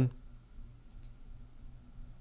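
A few faint computer mouse clicks against a quiet steady room hum.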